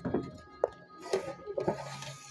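Wooden spoon scraping against the inside of a metal cooking pot in several short rubs, with one sharp knock about halfway through.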